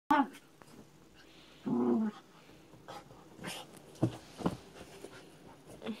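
Black poodle rolling and rubbing about on a quilt: rustling of the bedding and the dog snuffling, with a few short sharp noises past the halfway point. A brief sound at the very start and a short pitched vocal sound about two seconds in are the loudest things heard.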